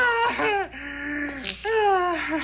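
A man's voice making long, high-pitched wails, each call sliding down in pitch, several drawn-out calls in a row.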